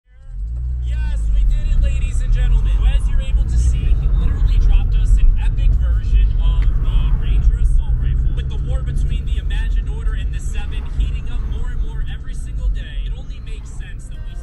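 Steady low road and engine rumble inside a moving car's cabin, with quick voice-like sounds over it.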